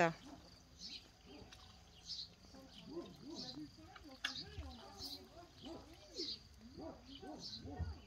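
Quiet, indistinct voices murmuring in the background, with faint short high bird chirps about once a second.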